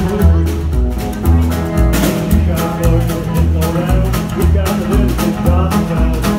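Live rockabilly trio playing an upbeat number: an upright double bass pulsing about two notes a second, with snare drum hits and electric guitar.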